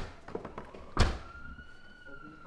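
A single heavy thud about a second in, followed by a faint, steady high ringing tone that fades out.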